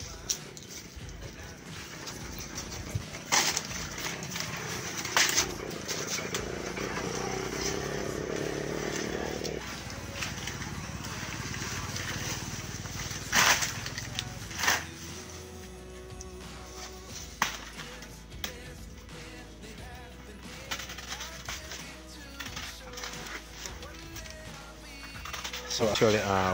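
Rustling of banana leaves and dry leaf litter, with a few sharp snaps several seconds apart.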